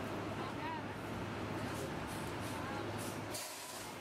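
Busy city street ambience: traffic on wet pavement with the voices of passers-by, and a brief hiss about three seconds in.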